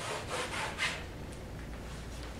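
Oil paint being scrubbed onto a canvas with a brush: a run of quick rubbing strokes in the first second, then fainter.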